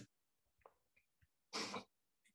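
Near silence, broken about one and a half seconds in by one short breathy sound from a person, such as a quick breath or a small throat noise.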